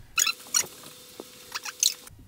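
Three short runs of small, sharp clicks, with a faint steady hum underneath.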